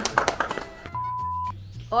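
Short electronic logo sting: a few sharp clicks, then a brief steady beep about a second in, then a rising high sweep over low pulsing bass notes.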